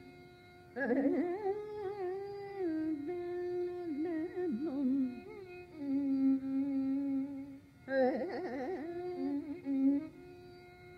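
Carnatic music in raga Shanmukhapriya, an unmetered raga exposition. A melodic line of sliding, oscillating notes (gamakas) runs over a steady tambura drone, holds one long low note in the middle, then starts a new phrase near the end.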